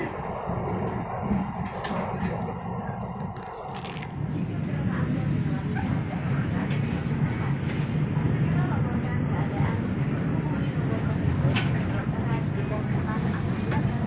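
Steady low hum inside a passenger train carriage with indistinct voices in the background. A few crinkles and clicks of a plastic wet-tissue packet being handled come in the first four seconds, and one more click comes later.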